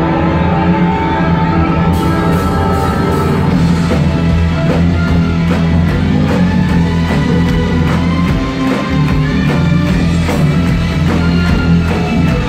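A symphonic metal band playing live through a PA: electric guitars, bass and drums over sustained chords. Regular cymbal beats come in about two seconds in.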